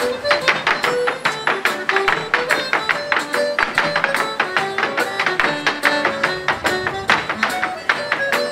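A recorded Irish dance tune playing through a small portable loudspeaker, with hard dance shoes beating rapid, even taps on a wooden dance board.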